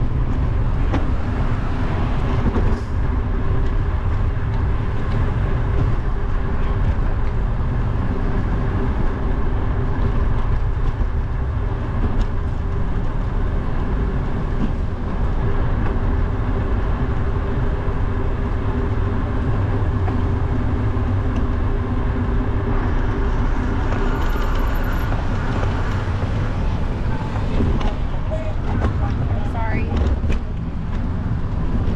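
Wind buffeting a bicycle-mounted action camera's microphone while riding through city traffic, with a steady engine hum from a nearby vehicle that fades out about three-quarters of the way through.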